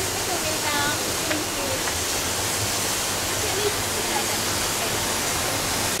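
Steady rushing of an indoor waterfall, with faint voices of people talking in the background.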